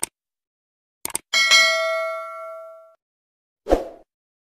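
Subscribe-button animation sound effect: a click, then two quick mouse clicks about a second in, followed at once by a bright notification-bell ding that rings out and fades over about a second and a half. A short dull thump comes near the end.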